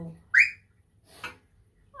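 A short, high-pitched squeal that rises sharply in pitch, most likely a voice reacting to the draw-four card just played. About a second later comes a brief breathy puff.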